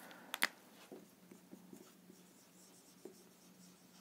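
Marker pen writing on a whiteboard: faint, short scratchy strokes, with two sharp clicks about half a second in and a faint steady hum underneath.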